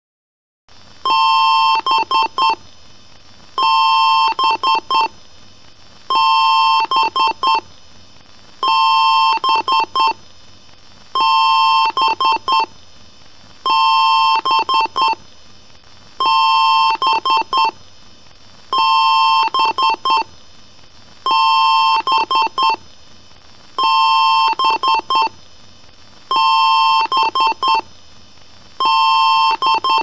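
Computer beep code from a PC speaker: one long beep and three short beeps, repeating about every two and a half seconds over a low steady hiss.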